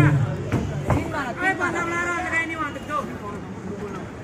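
Voices talking and calling out over a background of crowd chatter, with a single sharp knock about a second in.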